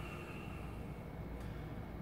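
Quiet, steady room hum with no distinct event.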